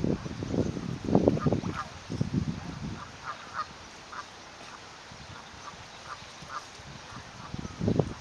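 Newly hatched mute swan cygnets peeping: a series of short, faint, high cheeps. In the first few seconds and again near the end, the dry reeds of the nest rustle and crackle as the adult swan works the nest with her bill.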